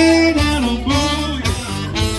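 Live funk band playing: a saxophone carries a gliding melody over electric guitar and a steady low accompaniment.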